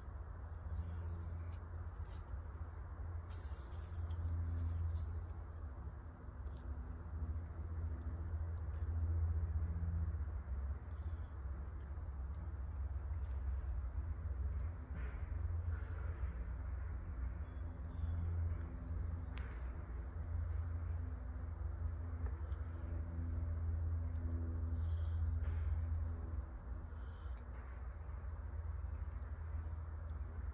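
Low outdoor background rumble that swells and eases, with a few faint clicks and taps.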